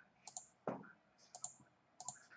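A few faint computer clicks, mostly in quick pairs, with one slightly fuller soft tap about two-thirds of a second in, as the shared screen is being changed.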